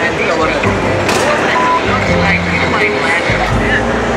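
Busy arcade din: background music with a deep bass line under crowd chatter and short electronic game tones.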